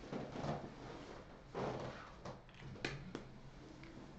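Faint rustling and handling noises from a person moving close to the microphone, with two light clicks a little under three seconds in, over a low steady room hum.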